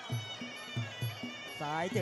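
Traditional Muay Thai sarama fight music: the pi java oboe holding a steady reedy line over a beat of klong khaek drums, about three strokes a second, with faint ching cymbal ticks. A commentator's voice comes in near the end.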